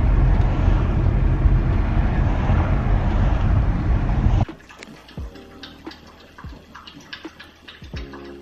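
Car cabin noise while driving: a loud, steady road and engine rumble that cuts off suddenly about four and a half seconds in. It is followed by a much quieter stretch of scattered light clicks.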